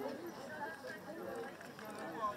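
Faint voices chattering in the background, with soft hoofbeats of a horse walking on sand.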